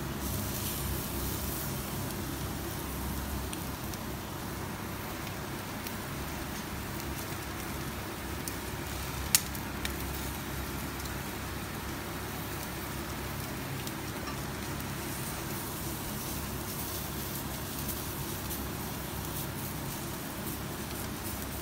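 Commercial gas-and-charcoal yakitori grill running steadily, with skewered chicken sizzling over the fire. A single sharp click comes about nine seconds in.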